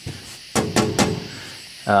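A few sharp, light clicks, about three within half a second, from the homemade license-plate fan shroud being touched by hand.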